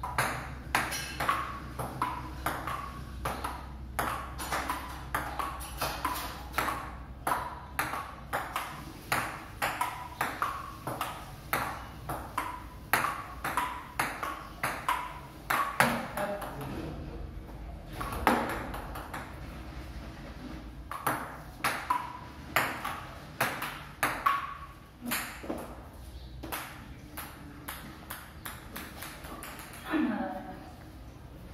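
A table tennis rally: the ball clicking off the paddles and bouncing on a wooden tabletop in a quick, even run, about three clicks a second, for the first half. After that the clicks come in shorter, scattered bursts between breaks in play.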